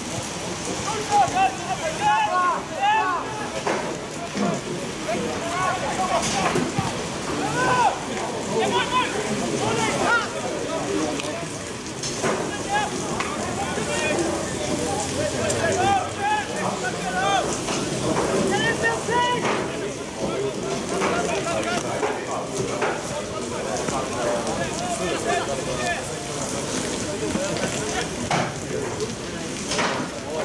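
Steady rain falling with a patter, under scattered voices of players and spectators calling out through the whole stretch.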